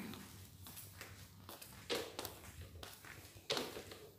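Footsteps on a staircase: a few separate, quiet steps, the clearest about two seconds in and another near the end.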